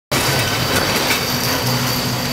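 A steady mechanical hum under an even rushing noise, holding constant with a few faint knocks.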